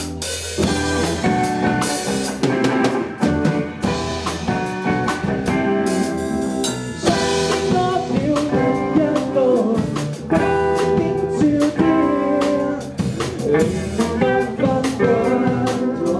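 Rock band playing live and loud: a drum kit with snare and cymbal strokes driving under electric guitars.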